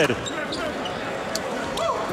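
Live basketball game sound in an arena: a steady crowd murmur with a few short, sharp sounds from the court.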